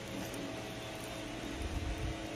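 Steady low background hum, with a low rumble near the end.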